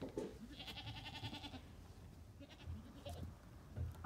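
A goat bleating once, a high quavering call about a second long, followed by a shorter, fainter call about three seconds in.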